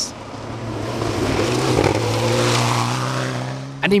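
Mitsubishi Lancer Evolution X rally car running flat out on a gravel stage. Its engine holds one steady high-revving note, with a hiss of tyres on loose gravel. The sound grows louder to a peak past the middle and then eases off as the car goes by.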